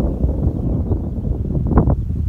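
Wind buffeting the phone's microphone: a loud, uneven rumble with no steady tone.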